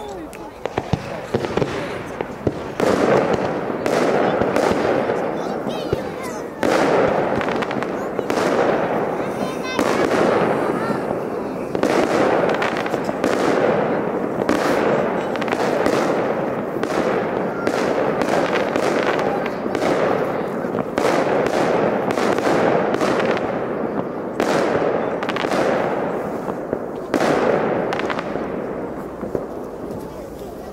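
Aerial fireworks shells bursting one after another, a long run of sharp bangs at irregular intervals with a dense rumbling din between them.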